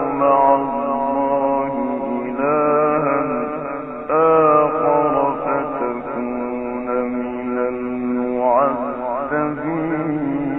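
A solo male voice recites the Quran in the melodic, ornamented tajweed (mujawwad) style: long held notes in a few drawn-out phrases, with a quick wavering run near the end. The old recording sounds muffled.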